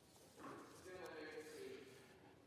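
Faint, distant voice off the microphone in a large hall, just above room tone, for about a second and a half.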